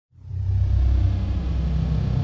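Deep, steady cinematic rumble of a logo-intro sound effect, swelling in quickly at the start and then holding, with a thin high tone sliding down above it at the beginning.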